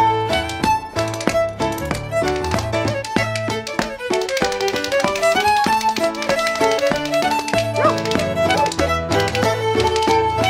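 Cape Breton fiddle playing a quick march tune, with spoons clacking a fast, even rhythm under the melody. A low accompaniment drops out around the middle and comes back a little later.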